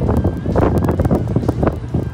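Wind buffeting a phone's microphone, a loud, uneven rumbling rush.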